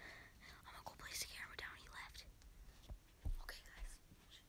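A person whispering faintly for the first couple of seconds, then a thump about three seconds in.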